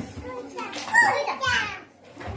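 Small children's high-pitched voices, wordless babbling and calls while they play, in several short bursts that rise and fall in pitch.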